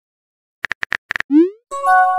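Texting-app sound effects: a quick run of about five keyboard tap clicks, then a short rising pop as the message is sent, then a bright chime of several held tones starting near the end.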